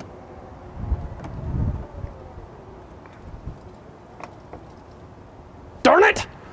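Tesla Model X powered falcon-wing rear door whirring as it swings upward, with a few faint clicks. Just before the end comes a loud, brief sound that sweeps up in pitch.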